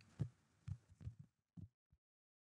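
Near silence broken by about five faint, soft low thumps, irregularly spaced.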